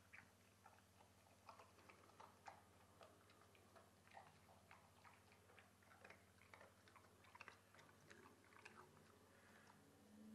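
A spaniel eating a meal of raw minced tripe mixed with kibble from a stainless-steel bowl: faint, irregular wet chewing and clicking, a few sounds a second.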